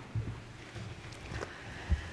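Soft rustling and a few light knocks and thumps of people sitting down in stage armchairs and handling microphones, the loudest thump coming near the end.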